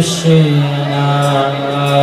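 A man's voice chanting a devotional mantra through a microphone and sound system, holding long, steady notes with a slight dip in pitch near the start.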